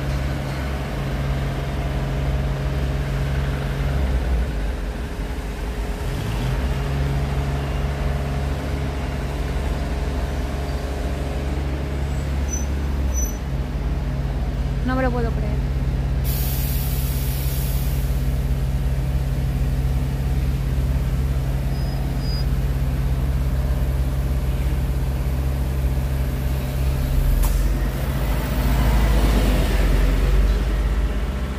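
Heavy diesel machinery running steadily on a construction site, a low drone. About sixteen seconds in there is a short, high hiss of air, just after a brief falling chirp.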